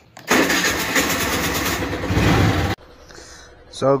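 Suzuki scooter's electric starter cranking and the engine starting and running, loud with a fast even pulse. It cuts off suddenly under three seconds in.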